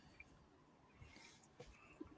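Near silence: room tone in a pause of speech, with a few faint, isolated clicks.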